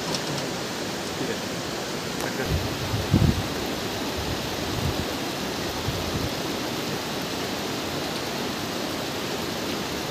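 Rocky mountain river rushing over boulders, a steady even roar of water. A few brief low thumps about three seconds in stand out above it.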